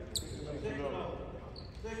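A basketball bouncing on a hardwood gym floor, with a short sharp click about a quarter-second in, amid background voices.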